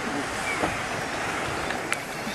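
Steady rushing noise of a small boat on open water, with a single sharp click near the end.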